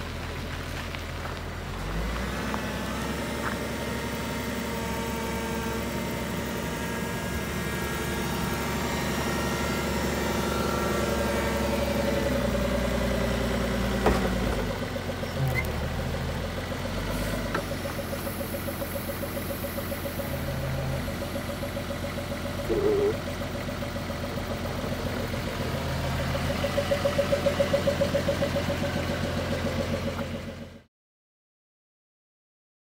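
Dantruck heavy forklift's engine running, its note shifting up and down as the truck is worked. A single sharp click comes about halfway through, and the engine grows louder and pulses near the end.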